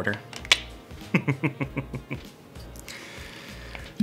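A man laughing, with one sharp click about half a second in.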